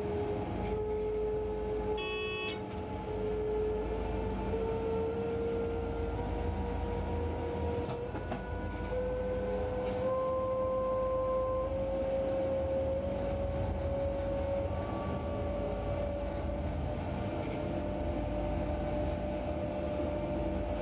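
Class 185 electric locomotive's traction converters and motors whining as the freight train gathers speed, the whine rising slowly in small steps, heard from the cab. A short high tone sounds for about half a second, about two seconds in.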